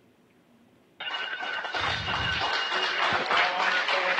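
About a second of near silence, then a sudden outburst of several people cheering and shouting in the space station cabin. A bell rings clearly over the first couple of seconds of it, the ship's bell traditionally struck to welcome arriving crew.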